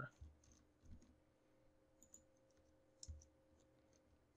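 Near silence with about four faint, short clicks of a computer keyboard and mouse in use.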